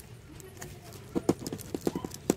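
A quick series of short, sharp clicks and taps from small plastic jewellery packets and a clear plastic storage box being handled, starting about a second in.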